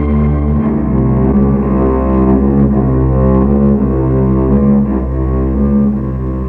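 Film background score of low bowed strings, cello and double bass, playing sustained notes that change about every half second over a deep bass.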